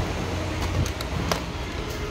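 Steady background rumble with a few light clicks. No vacuum motor starts: the Dyson cordless stick vacuum being tested lights up but does not run.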